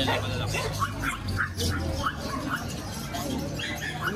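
Small puppies yipping: a string of short, high yelps.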